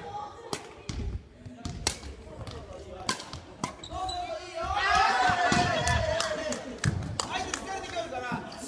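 Badminton rally in a large gym: sharp, separate clicks of racket strings hitting the shuttlecock, along with footfalls on the wooden floor. A voice calls out for a couple of seconds midway.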